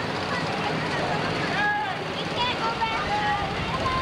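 Indistinct voices talking briefly over a steady rushing background noise.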